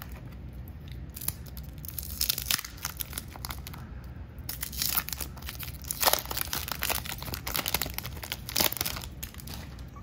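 Waxed paper wrapper of a 1993 Topps baseball card pack being crinkled and torn open by hand: a run of crackling rips that starts about a second in and goes on for several seconds.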